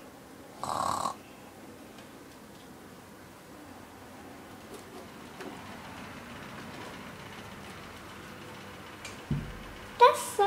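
A sleeping woman snores once, loudly, about a second in. Then only a faint steady hiss follows, with a dull thump near the end.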